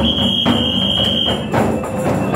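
Demonstrators' percussion beating a steady rhythm in an echoing Métro corridor, with a held high whistle blast over it for about the first second and a half.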